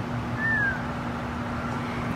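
Steady background noise with a constant low hum, and one short falling whistle-like call about half a second in.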